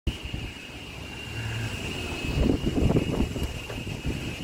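Golf cart driving over paving, with a rumble that grows louder after about two seconds and a steady high whine throughout.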